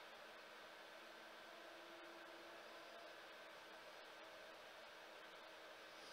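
Near silence: room tone, a steady faint hiss with a low hum.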